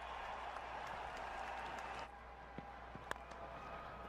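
Stadium crowd applauding a boundary in a cricket broadcast, heard at low level. It drops away suddenly about halfway through to quieter ground ambience, with a few faint clicks.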